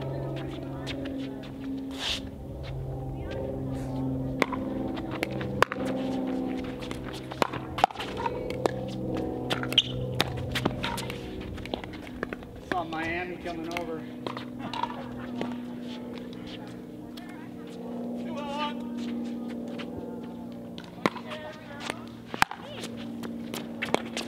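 Pickleball paddles striking the hard plastic ball in a doubles rally: short, sharp pops at irregular intervals, over faint background voices.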